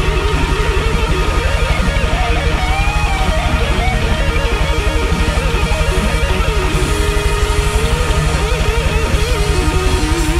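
Live heavy rock band playing an instrumental passage: an electric guitar lead line with wavering bends and vibrato over bass guitar and a fast, even drum pulse.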